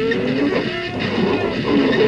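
Noise rock played live without overdubs: electric guitar notes sliding and bending up and down over a dense, noisy wash of sound.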